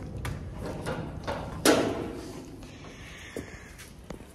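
A few light knocks and clicks, with one louder clatter about one and a half seconds in, then only faint background.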